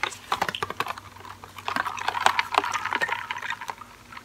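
Lidded paper fountain-drink cups of Coke being picked up and handled, giving a run of quick clicks and rattles from ice, lid and straw that grows denser and louder in the second half.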